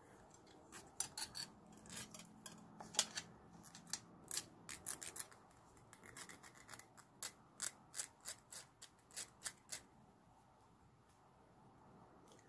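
Small metal file rasping the cut end of 14-gauge copper wire in short, faint strokes, a few a second, smoothing off a sharp burr; the strokes stop about ten seconds in.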